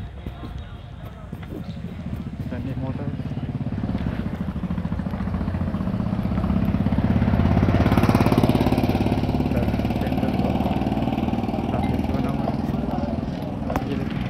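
A motor vehicle engine running in street traffic. It grows louder over the first several seconds and is loudest about eight seconds in.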